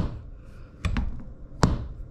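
A few sharp knocks and clicks about a second apart as the adjustable leveler legs of a folding camping cot are handled.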